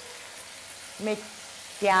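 Steady soft sizzling from a pot where potatoes and strips of guanciale are browning in oil under a layer of chicory and beans. A short voice sound comes about a second in, and speech starts near the end.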